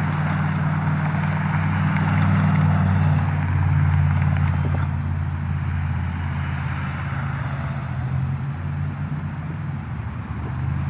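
A vehicle engine idling steadily close by: a low, even hum with a hiss above it.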